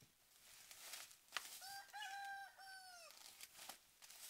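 A rooster crowing once, faint, a call of about a second and a half in two parts. A sharp click comes just before it.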